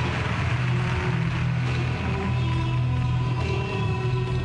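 Instrumental music for a figure skater's short program, with held, sustained notes.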